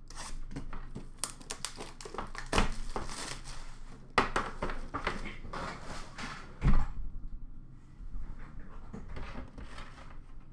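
Hockey card packs being handled and torn open, with foil wrappers crinkling and cards and packaging rustling on a counter in irregular bursts. A single loud knock comes about two-thirds of the way through.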